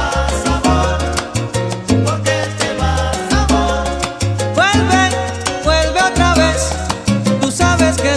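Salsa music playing with no singing: an instrumental passage with a moving bass line and steady percussion, with pitched instrument lines that scoop upward about halfway through.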